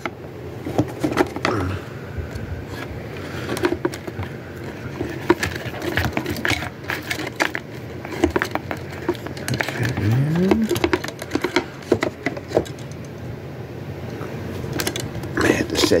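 Handling noise: scattered clicks and taps as loose wires and small parts are picked up and moved about on a workbench, with low muttering. About ten seconds in there is a short rising tone.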